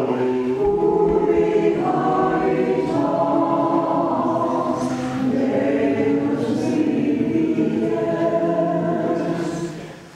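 A church congregation singing a hymn together in sustained notes, the singing dying away near the end.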